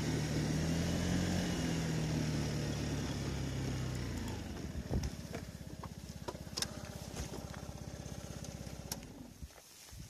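Honda Tact scooter engine running while riding, easing off about four seconds in and settling to an even, pulsing idle. A few sharp clicks sound over the idle before the engine sound fades and stops at the very end.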